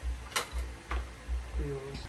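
Parts of a plastic-and-steel corner shelf being handled during assembly: a sharp click, then a fainter one about half a second later. A low, regular pulsing runs underneath.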